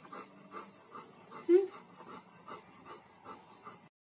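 Golden retriever panting steadily, about three breaths a second, with one short, loud whimper about one and a half seconds in. The sound cuts off just before the end.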